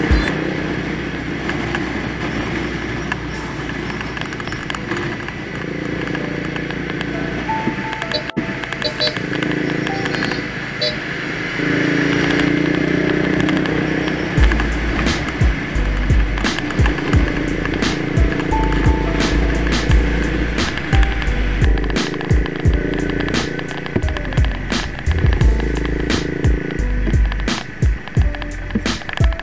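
Background music; a deep bass line and a beat come in about halfway through.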